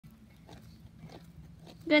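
A Doberman digging in dry dirt with its front paws: faint scraping and a few soft scuffs of dirt.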